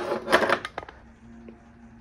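Metal pull-tab lid of a small tin can clinking and rattling, a quick run of sharp clicks in the first second.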